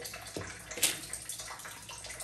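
A steady hiss with a light knock about a third of a second in and a short, sharp click just before the middle.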